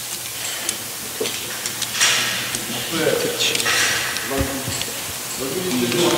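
Rope access gear being handled on the rope: rustling of rope and harness webbing in short hissing bursts, with a few small metal clicks of carabiners and hardware.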